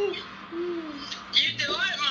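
A man laughing with a low, falling hoot. About a second and a half in, a young girl's high voice rises and falls.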